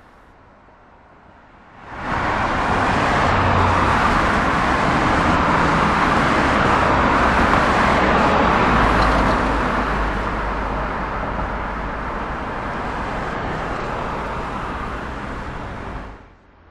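Road traffic noise of cars driving: a steady noise of engines and tyres with a low rumble underneath. It comes in about two seconds in and eases slightly toward the end.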